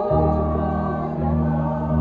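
A small mixed choir of older adult voices singing held notes, with piano accompaniment.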